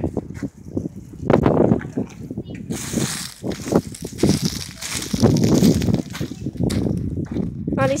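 Footsteps crunching and rustling through dry leaf litter, as a run of short, uneven strokes.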